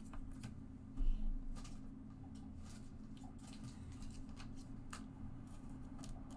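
Trading cards being handled on a table mat: faint scattered clicks and slides of cards against each other and the surface, with a dull thump about a second in. A low steady hum runs underneath.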